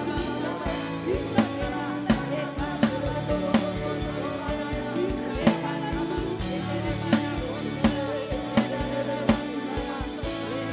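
Live church worship music: a drum kit keeping a slow, steady beat with a snare hit about every three-quarters of a second, over held chords, with voices singing.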